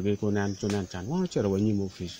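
A man speaking in short phrases, with a faint, steady, high chirring of crickets behind.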